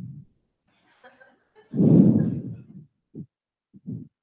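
A short breathy laugh about two seconds in, with two brief faint sounds near the end.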